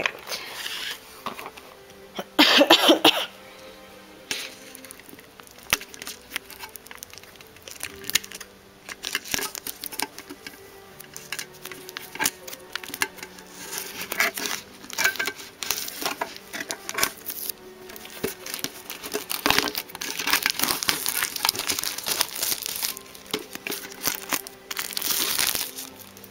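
Clear plastic shrink wrap being torn and peeled off a metal collector's tin, crinkling and crackling. There is a sharp loud tear about two and a half seconds in, and dense crinkling through the last several seconds.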